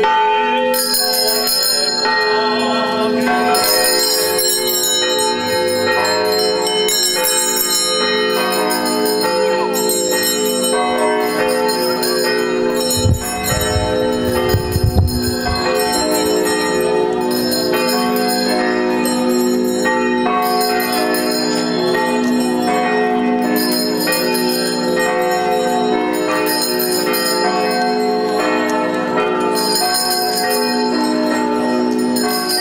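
Altar servers' hand bells ringing continuously in a procession, shaken again every second or two so that the jingling shimmer keeps renewing over sustained ringing tones. A few low thumps come about halfway through.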